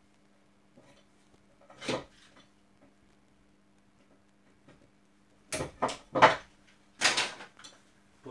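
Three sharp clacks in quick succession about five and a half seconds in, then a short clatter a second later: hard plastic and metal IP camera parts and hand tools knocked and handled on a wooden workbench.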